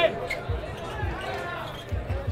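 Basketball bouncing on an outdoor court as it is dribbled: a string of low thuds about twice a second, under faint crowd voices.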